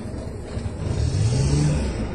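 A motor vehicle engine running with a low rumble, revving up about a second in so that its pitch rises.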